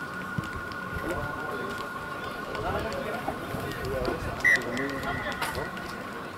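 Rugby players and spectators calling out in the distance during open play, over a steady high-pitched hum.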